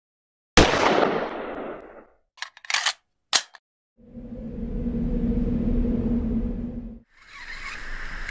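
Production-logo intro sound effects: a sharp hit with a long fading hiss, a few quick clicks, then a low humming swell for about three seconds that cuts off suddenly. Faint outdoor ambience comes in near the end.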